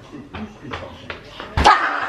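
A toddler's quick steps, then a sudden thump about one and a half seconds in and an excited high-pitched squeal as she runs out laughing from hiding.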